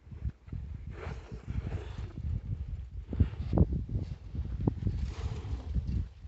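Wind buffeting the microphone in an uneven low rumble, over cattle eating feed from a trough close by.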